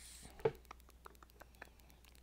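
Yarn being pulled through a punched hole in a zipper's fabric tape: a short soft rustle at the start, then a light tick about half a second in and faint handling sounds.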